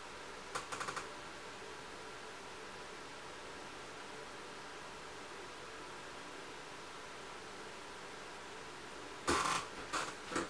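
Steady faint background hiss, broken about half a second in by a quick run of four or five small clicks, and near the end by a louder brief clatter of handling noise.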